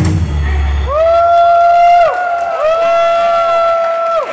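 A song's backing track ends on a low held note within the first second, then several high voices call out twice in unison, each call one long held note lasting over a second, ringing through the hall's PA.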